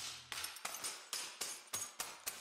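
Hammer striking glass inside a plastic bag on a concrete floor, repeated blows about three a second, the broken pieces clinking with each strike.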